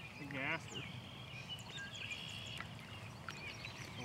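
Quiet outdoor ambience with small birds chirping, and a short voiced sound about half a second in.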